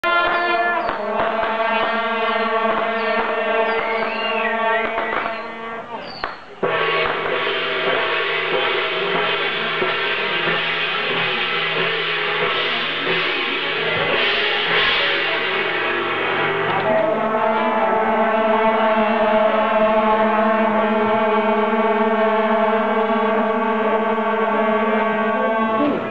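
A troupe of shaojiao, long brass processional horns, blowing long held notes together in a loud droning chord. The sound dips briefly about six seconds in, then comes back and holds steady.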